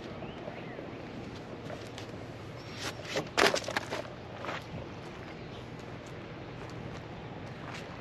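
Footsteps crunching on gravel, with a quick run of crunches about three seconds in, over a faint steady background hum.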